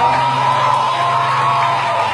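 Live band music with keyboards and strings: a long held note over a steady low note, with crowd noise from the audience beneath.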